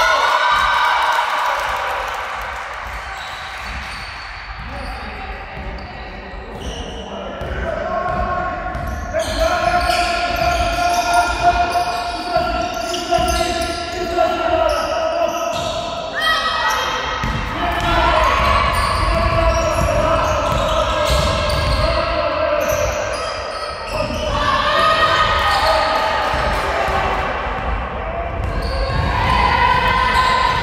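A basketball being dribbled and bouncing on a wooden sports-hall floor during play, with players' voices calling out. The sound echoes in the large hall.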